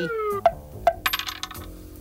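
Cartoon sound effect of a flipped coin-like button falling and landing: a falling whistle-like tone that ends about half a second in, two sharp clinks as it hits and bounces, then a quick rattle as it spins down to rest.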